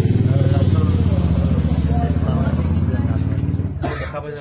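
An engine running close by with a steady low throb that fades near the end, with faint voices underneath.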